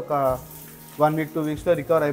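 A man's voice speaking in short phrases, with a brief pause in the middle: speech only.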